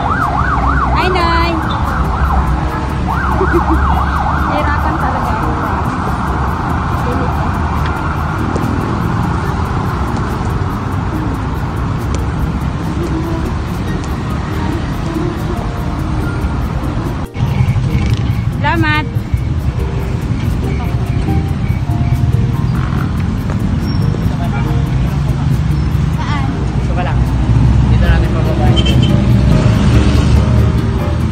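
A vehicle siren yelping in rapid up-and-down sweeps, then wailing more steadily and fading over the first fifteen seconds, over street traffic noise. After an abrupt cut, a steady low traffic rumble.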